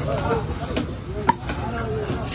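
Knife chopping through mahi-mahi onto a wooden log chopping block: a few sharp knocks, the loudest just past a second in.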